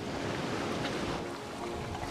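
Steady rush of sea water and wind around a sailing yacht under way, with faint music underneath.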